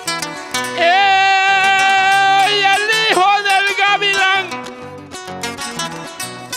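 Guitar strumming a steady rhythm. From about a second in until about four and a half seconds, a voice holds one long wordless sung note over it, with a sharp dip in pitch midway and a wavering close.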